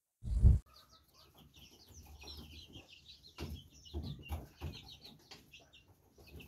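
A brood of young chicks peeping, with many short high cheeps overlapping and a few soft low knocks among them. A short low thump comes right at the start.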